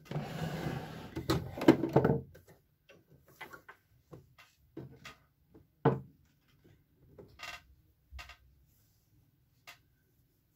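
A Singer domestic sewing machine running a short straight stitch for about two and a half seconds, then scattered clicks and rustles as the fabric is handled and drawn away from the machine.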